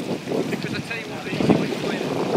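Wind buffeting the microphone over the rush of sea water washing along the hull of a sailing ship under way.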